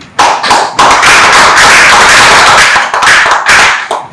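Applause from a room of people, which starts with a few separate claps, fills out into dense clapping for about three seconds, then thins to a few last claps.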